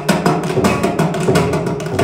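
Carnatic concert music: a mridangam played in rapid, closely spaced strokes under a melody from voice and violin.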